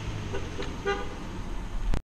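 A short car horn toot about a second in, over a steady low rumble of wind and road noise as the camera moves off. The sound cuts off abruptly at the end.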